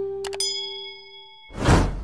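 Subscribe-button animation sound effects over fading music: two quick mouse clicks followed by a bright, ringing bell-like ding that dies away. About a second and a half in comes a loud, noisy whoosh, the loudest sound.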